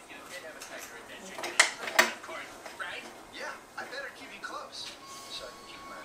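Two sharp metallic clicks about half a second apart, with faint voices in the background.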